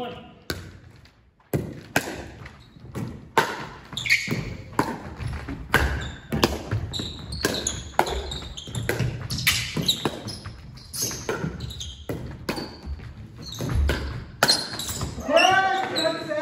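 Pickleball rally: paddles striking a hollow plastic ball in sharp pops, with the ball bouncing on a hardwood gym floor, every half second or so and echoing in the hall. The rally stops near the end.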